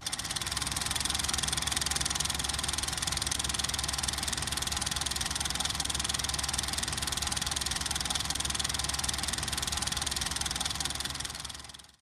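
Steady mechanical running sound, a rapid fine clatter over a low hum, fading out in the last second.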